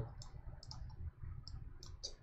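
A few faint, short clicks of a computer mouse, about four spread across two seconds, while on-screen annotations are drawn.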